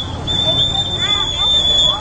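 Voices of people in a street, with one voice rising and falling about a second in, over a low rumbling background. A steady high-pitched tone runs throughout, breaking off only briefly near the start.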